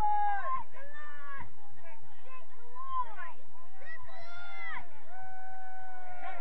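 Voices shouting and calling out, the words unclear, with a long high-pitched call about four seconds in and a drawn-out call near the end.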